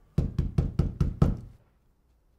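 Rapid knocking on a door: about six quick knocks in just over a second.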